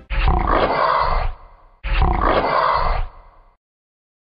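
A big-cat roar sound effect played twice: two identical roars, each about a second and a half long, the second starting about 1.8 seconds after the first.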